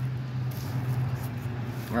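A steady low mechanical hum over an even background hiss.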